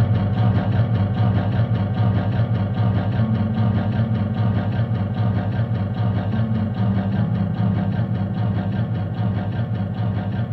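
A steady, buzzy low drone from amplified instruments, with small shifts in pitch and no drum hits, easing slightly in loudness toward the end.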